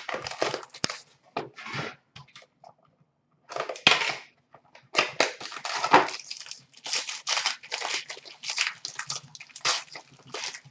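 A sealed hockey card box and its wrapper being torn open and the cards handled: irregular tearing, crinkling and rustling, with a short quiet pause about three seconds in and steady rustling through the second half.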